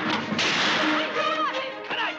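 A sharp gunshot crack about half a second in, followed by a short whining glide, over orchestral western score.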